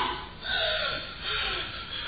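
A man gasping for breath: two heavy, breathy gasps about a second apart.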